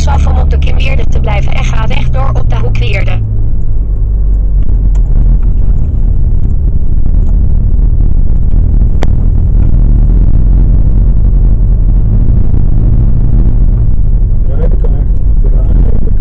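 A car driving along, heard as a low, steady rumble of engine and road. A voice talks over it for the first three seconds and briefly again near the end, and a single click comes about nine seconds in.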